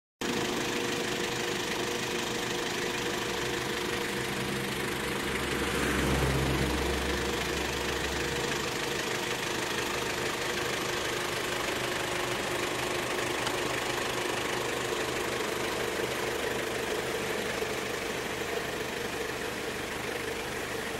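A vehicle engine idling with a steady hum, a deeper low rumble swelling in for a few seconds about a quarter of the way in.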